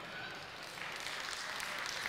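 Light applause from a congregation, picking up about a second in.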